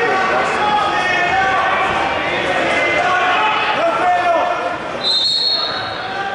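Voices of coaches and spectators calling out in a large gym throughout, and about five seconds in one short, steady, high-pitched blast of a wrestling referee's whistle.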